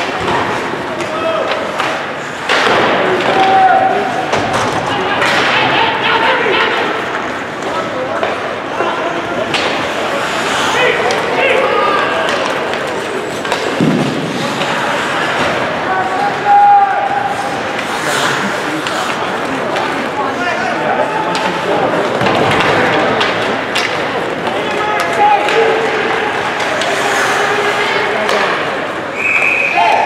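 Ice hockey play: skates scraping on the ice, sharp knocks of sticks, puck and boards, and short shouts from players, all carrying in a large, mostly empty rink.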